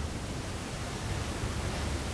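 Steady hiss of room tone with a faint low hum underneath.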